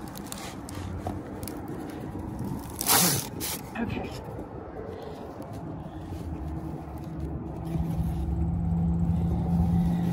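Hands handling a metal tension spring and carpeted step rug, with a sharp scrape about three seconds in. A steady engine hum grows louder through the second half.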